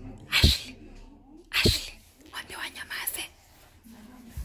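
A person whispering and breathing sharply close to the microphone: two short, loud, breathy bursts about half a second and a second and a half in, then softer whispered fragments.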